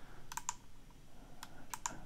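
Light clicking of computer keys: two clicks about half a second in and three more near the end.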